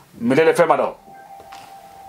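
A man's speech in the first half, then a faint steady electronic tone at one pitch, held for about a second and a half.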